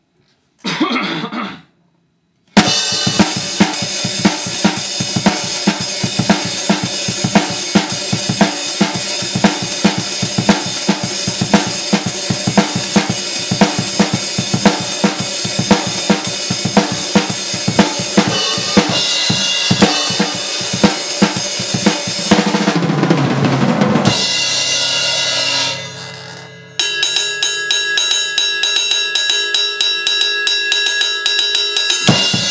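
Acoustic drum kit, bass drum faint: a steady beat on snare, hi-hat and cymbals for about twenty seconds, then a fill that falls in pitch, a cymbal left ringing as it dies away, and a new beat starting near the end.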